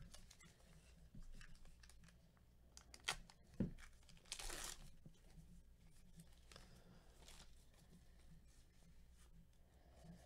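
Faint crinkling and tearing of a trading-card pack wrapper being ripped open. There are two sharp clicks just after three seconds, then the main short rip about four seconds in, then lighter rustles.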